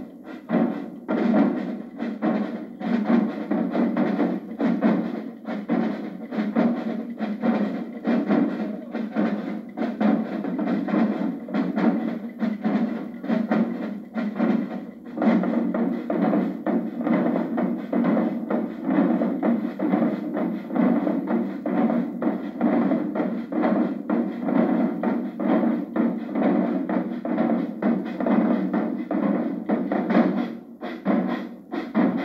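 Marching multi-tenor drums (quints) played in a fast, unbroken run of strokes, with no let-up. Recorded off a television, so the sound is thin, with little bass.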